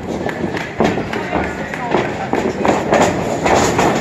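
Running footsteps and repeated thuds on a wrestling ring's canvas, with indistinct voices from the crowd.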